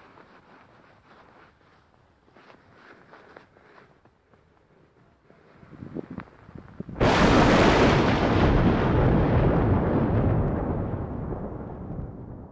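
Faint crunching of snow under a gloved hand, then about seven seconds in a sudden loud explosion-like boom that rumbles on and slowly fades over several seconds.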